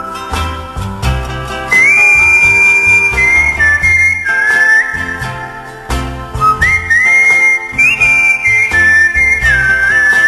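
Instrumental break of a country ballad: a single whistled melody line sliding up into long held notes, over a band's low accompaniment.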